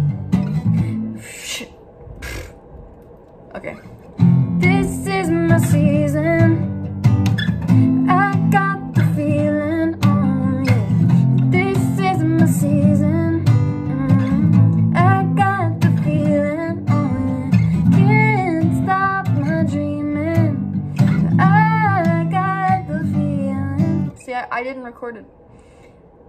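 Steel-string acoustic guitar strummed in chords, with a woman singing a melody over it. The strumming drops out for about three seconds near the start, then comes back and carries on under the singing.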